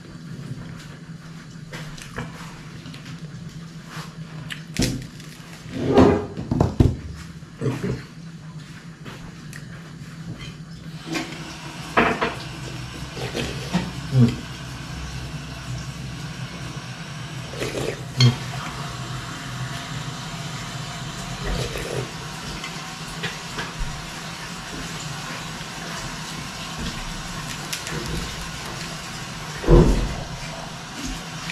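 A person eating soup from a metal pot: a spoon knocking against the pot, and slurping and chewing, heard as scattered short sounds over a steady low hum. A steady hiss comes in about eleven seconds in.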